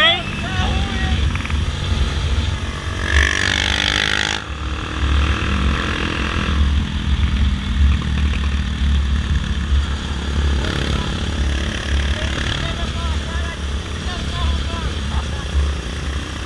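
Motorcycle running at steady cruising speed, with a continuous low rumble of engine and wind buffeting the microphone. A louder rush of wind noise comes about three to four seconds in.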